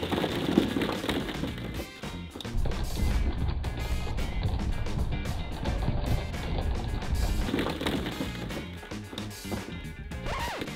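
Hollow plastic ball-pit balls pouring down and clattering against each other and the cardboard box in a rapid run of light clicks, over background music.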